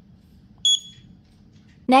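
One short, high electronic beep from a DWIN T5L touchscreen display's buzzer, the touch-feedback tone it gives when an on-screen button is pressed.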